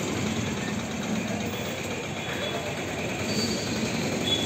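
Steady outdoor background noise from a field recording, with faint voices of people talking at a distance.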